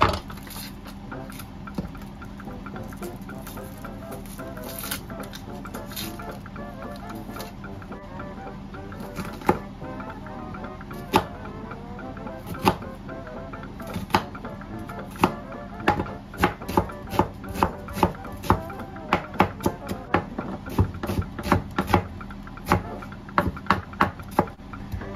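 Kitchen knife chopping an onion on a plastic cutting board, sharp knocks that come only now and then at first, then a steady two to three chops a second from about two-thirds of the way in. Background music plays throughout.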